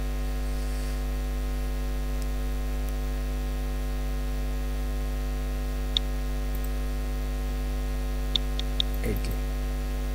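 Steady electrical mains hum in the recording, with a few short mouse clicks: one about six seconds in and two close together near the end.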